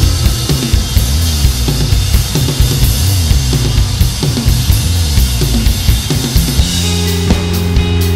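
Rock band playing live in an instrumental passage with no singing. The drum kit drives the beat with bass drum and snare hits over a moving bass line. Near the end the band settles onto held chords while the drums keep going.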